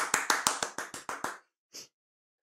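Hand clapping: a quick, even run of about a dozen claps, some seven a second, fading a little toward the end, followed by a brief hiss.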